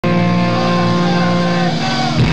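Live rock band's electric guitars holding one loud sustained chord, which changes near the end as a note bends downward.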